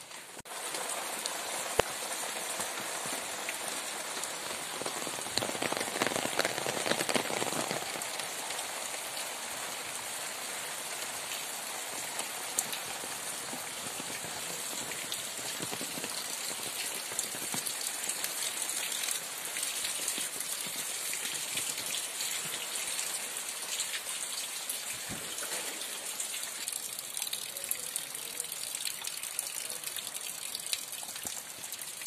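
Steady rain falling, with scattered sharp ticks of drops. It comes in a little heavier for a couple of seconds about six seconds in.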